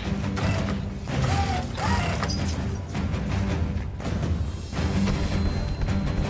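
Film soundtrack: music mixed with mechanical clanking and ratcheting sound effects, with a series of sharp metallic hits.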